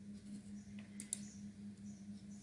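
Computer mouse clicking, two quick clicks about a second in, over a faint steady low hum.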